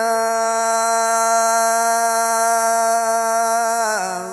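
A male Quran reciter holding one long, steady note of melodic tilawah through a microphone and amplified sound system, the pitch barely moving, dipping into a new phrase near the end.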